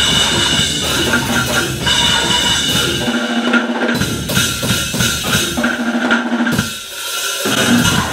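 Live drum kit played hard and fast, bass drum and snare packed densely, in a loud cybergrind set where the only other sound comes from an electronic backing. Twice the heavy low end cuts out for most of a second, leaving a single held note.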